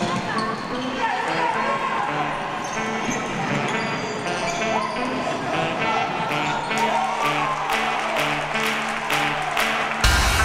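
Basketball being dribbled on a wooden gym court during play, with a fast run of bounces, about three a second, in the last few seconds. Voices and music sound in the hall behind it.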